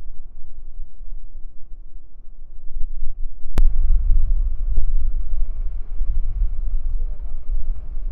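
Wind buffeting the microphone, a loud low rumble with no words. A sharp click comes about three and a half seconds in, after which the rumble grows louder.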